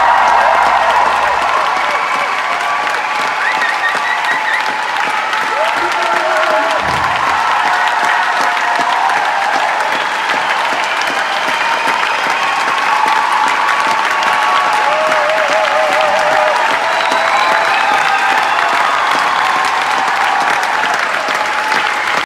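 Concert-hall audience applauding steadily after a song, with a few whistles and whoops rising above the clapping.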